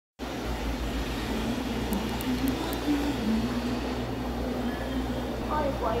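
Aquarium sponge filter bubbling from its air line in a goldfish tank, over a steady low hum.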